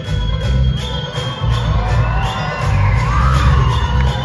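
Loud Indian film dance song with a heavy, steady beat, with an audience cheering and whooping over it, most in the second half.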